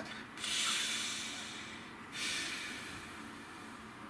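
A man taking slow, deep breaths. One long breath starts about half a second in and stops sharply at about two seconds, then a second, quieter breath follows and fades away.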